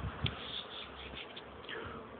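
Honeybees flying at a hive entrance, their buzzes rising and fading as single bees pass close. There are a couple of soft low bumps near the start.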